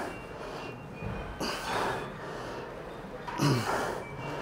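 A man breathing hard under strain through the last reps of a single-leg leg extension: a forceful breath out about a second and a half in, and a grunt falling in pitch near the end.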